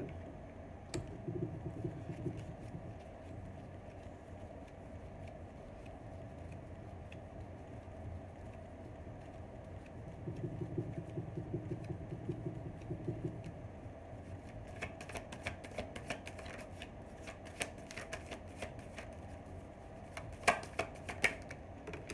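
A deck of tarot cards being shuffled in two short stretches, one about a second in and one around the middle. Near the end come quick clusters of sharp clicks as cards are snapped and laid down on a marble countertop. A steady low hum runs underneath.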